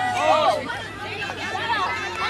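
Indistinct chatter of several overlapping voices, many of them high-pitched children's voices, with no clear words.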